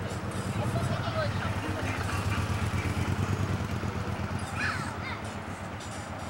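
Faint voices in the background over a steady low rumble, with a brief higher call near the end.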